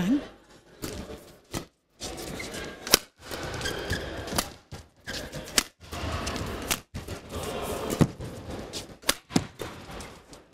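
Badminton rackets striking a shuttlecock in a fast doubles rally: sharp cracks at irregular intervals, several in quick succession near the end, over a steady hubbub of arena noise.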